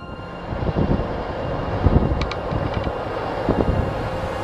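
Audi S5 Convertible driving by at road speed: a loud rumbling rush of engine, tyre and wind noise that swells up about half a second in, with a few light clicks near the middle.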